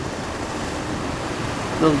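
Steady rush of wind and water aboard a moving river cruise boat on its open top deck: an even noise with no tones or knocks.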